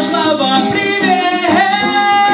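A man singing live to his own strummed acoustic guitar, ending on a long held note in the second half.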